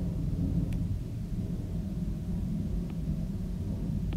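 Steady low background rumble, with two faint ticks, one just before a second in and another near three seconds.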